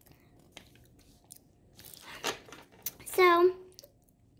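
Soft handling sounds of a paper instruction leaflet and small plastic toy pieces, with a few light clicks and taps. About three seconds in comes a short hummed 'mm' with a falling pitch.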